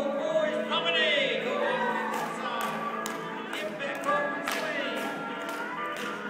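Country dance music for a square-dance singing call plays through the hall's sound system. From about two seconds in, sharp taps come roughly twice a second in time with the beat: the dancers' shoes on the wooden floor.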